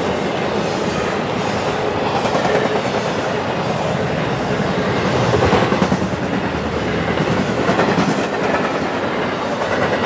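Cars of an intermodal freight train, loaded with trailers and containers, rolling past. The sound is a loud, steady rumble of steel wheels on rail, with the clickety-clack of wheels crossing rail joints.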